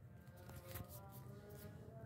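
Near silence, with only faint steady tones in the background.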